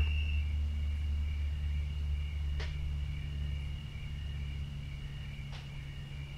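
Steady low background hum with a thin, steady high-pitched tone above it, and two faint clicks, one midway and one near the end.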